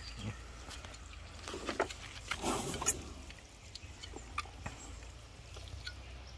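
Faint scrapes and short clicks of a hoof knife paring an elephant's toenail, cutting away blackened horn around a nail abscess, over a steady low background hum.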